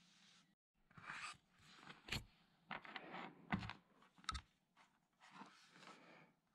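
Hands handling crocodile-clip wire leads and a plastic plug-in power adapter on a work mat: quiet rustling with three sharp clicks or knocks in the middle.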